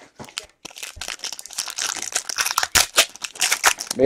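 Silvery plastic trading-card pack wrappers crinkling and tearing as packs are ripped open by hand. A dense, rapid crackle that starts faintly and grows louder from about a second in.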